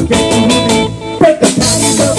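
Live band playing an upbeat song, with a strummed acoustic guitar and a drum kit.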